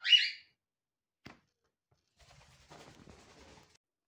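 A single short, high-pitched bird chirp right at the start, the loudest sound here, then a light click about a second later and faint rustling of the cake layer being handled and set in place.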